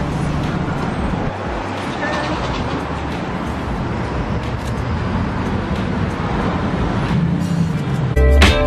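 Steady street traffic noise: an even hiss with a low rumble and no single event standing out.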